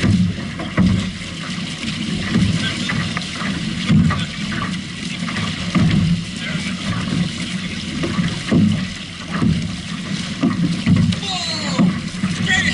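Outrigger canoe under way with the crew paddling hard: water rushing and splashing along the hull and outrigger, surging about once a second with the paddle strokes.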